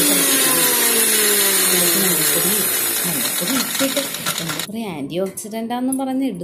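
Electric kitchen mixer grinder with its jar lid held down, the motor winding down after running, its pitch falling steadily over about three seconds. The grinding noise cuts off suddenly about four and a half seconds in, and a voice follows.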